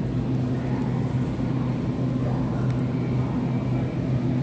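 Metal shopping cart being pushed along a hard store floor, its wheels giving a steady low rumble.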